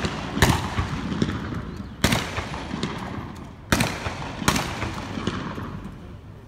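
Ceremonial rifle salute: a line of riflemen firing four ragged volleys, each a few cracks close together with a ringing echo. The first three come about a second and a half apart and the last follows closely after the third.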